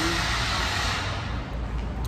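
Vehicle noise echoing in a concrete underground parking garage: a rushing sound over a steady low rumble that fades about a second and a half in.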